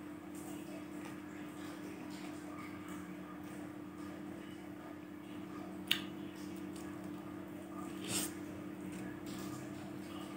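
A mandarin orange being peeled by hand: faint crackling of the rind pulling away, with one sharp snap about six seconds in and a louder tearing crackle about eight seconds in, over a steady low hum.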